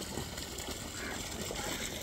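Steady, even background noise of open water and outdoor air, with no distinct sound standing out.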